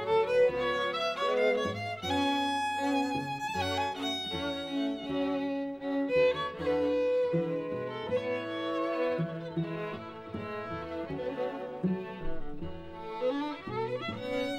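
String quartet of two violins, viola and cello playing together, bowed, with a violin melody over the cello's moving bass line.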